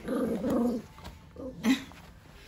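A dog growling for about a second while tugging on a rubber chew toy, then one short, sharp sound near the end, the loudest moment.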